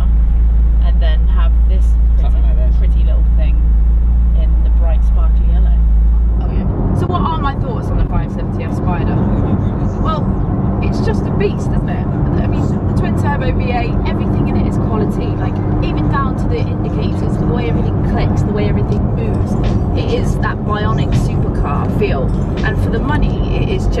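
Steady low rumble of the McLaren 570S Spider's twin-turbo V8 and road noise inside the roof-down cabin. About six seconds in it gives way abruptly to background music with a regular beat.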